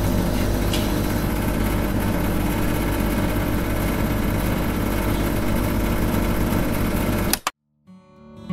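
Small electric motor of a miniature homemade concrete mixer running steadily as it turns the drum, then cutting off suddenly with a click near the end.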